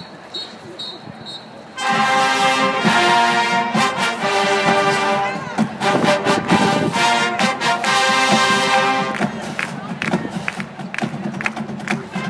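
Crowd murmur for about two seconds, then a high school marching band's brass and drums come in loudly, playing the school fight song in sustained brass chords with drum hits; the music eases briefly near the end before picking up again.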